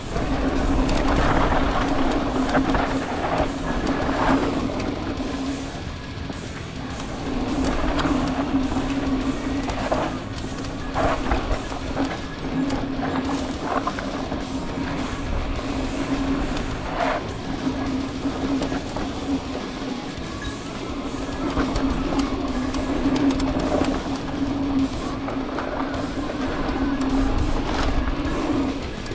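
Mountain bike ridden downhill on a dry dirt singletrack, heard from a handlebar or helmet camera: rumbling tyre and trail noise with scattered knocks and rattles over bumps, and wind on the microphone. A steady hum comes and goes every few seconds throughout.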